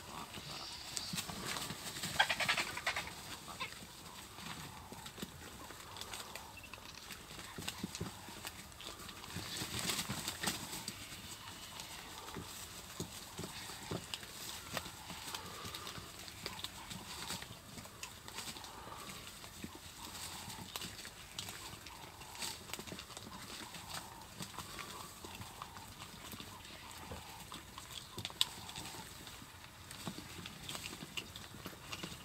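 Vultures feeding at a buffalo carcass: scattered clicks and knocks of bills pecking and tearing at meat and bone. Louder bursts of scuffling come about two seconds in and again around ten seconds.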